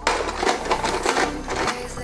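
Hand-operated stainless-steel ice crusher grinding ice cubes: a dense, irregular run of crunches and clicks.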